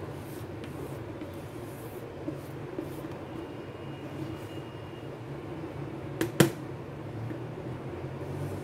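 Thick brownie batter being poured and scraped from a plastic bowl into a square metal baking tin, over a steady low background hum. Two sharp knocks come close together about six seconds in.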